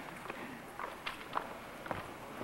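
Footsteps of shoes on a stage floor: a few light, irregular clicks over faint hall background.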